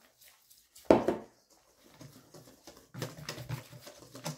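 A spoon working flour and butter in a stainless steel mixing bowl: one short sharp sound about a second in, then a run of quick scraping strokes near the end.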